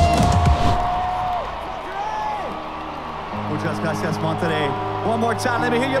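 Live concert music: a singer holds one long note over drums, then steady low bass notes carry the song. At the very end a performer starts shouting to the crowd over the microphone.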